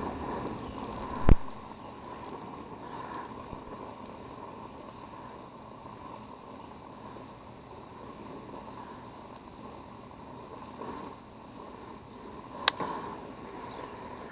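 Hose-fed brazing torch burning with a steady hiss while it heats a brazed copper joint on the liquid-line filter drier to unsweat it. Two sharp clicks, one about a second in and one near the end.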